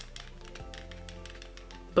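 Rapid light taps, several a second, from a powder brush working against the skin. Faint steady background music comes in about halfway.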